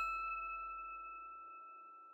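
Last note of a short outro jingle: a single bright, bell-like chime struck at the very start, ringing on and slowly fading away.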